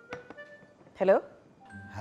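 The last chiming notes of a mobile phone ringtone, stopped by a short click as the call is answered, then a spoken "Hello".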